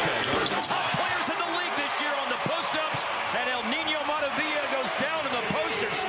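Basketball game court sound: a ball dribbled on a hardwood floor and sneakers squeaking in short chirps, over a steady arena crowd din.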